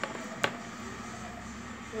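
The recording phone being propped up and set in place: a single sharp knock about half a second in, over a faint steady background hum.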